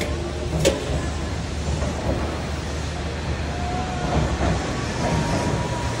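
Tobu Skytree Train electric multiple unit pulling out and running past along the platform: a steady low rumble of motors and wheels on the rails, with a sharp click about a second in.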